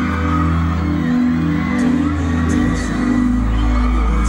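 Live pop song played loud through a concert hall's sound system: held deep bass notes and chords, the bass dropping lower a little past halfway, with whoops from the audience.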